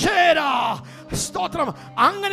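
A man's loud, drawn-out shouted exclamation into a microphone, falling in pitch, followed about a second later by a shorter vocal burst, over steady background music.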